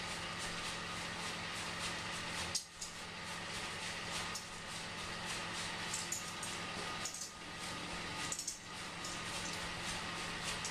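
Steady room noise, an even hiss over a low hum, with a few faint clicks and brief dips in level.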